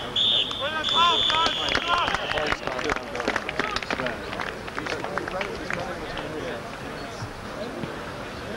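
Referee's whistle blown in a short blast and then a long blast of about a second and a half, over shouts from players and spectators, followed by scattered clapping and crowd noise that fades toward the end.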